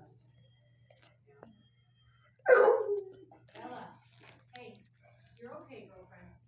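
A dog barks once, loudly and sharply, about two and a half seconds in, over faint indistinct voices and a steady low hum.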